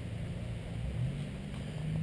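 Low steady background hum with faint hiss, and no distinct clicks or knocks.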